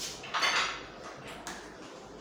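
Tableware at a meal: plates and cutlery clink, with a short scraping sound about half a second in, and single clicks at the start and near the middle.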